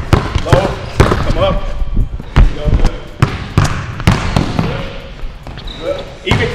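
Basketball dribbled hard and low on a hardwood gym floor, sharp bounces coming about two or three a second, ringing in the large gym.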